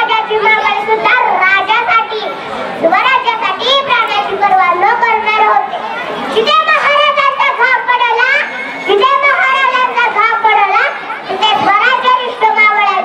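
Speech only: a young girl declaiming loudly into a microphone, in a high child's voice with short pauses between phrases.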